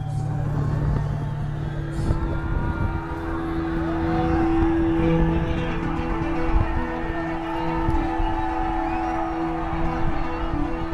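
Live concert sound heard from within the crowd: a sustained note drones steadily from the stage over a heavy low rumble, with faint voices rising and falling above it.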